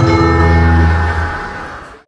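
Gamelan ensemble sounding a final struck note: the large hanging gong and bronze metallophones ring together and die away, fading out just before the end.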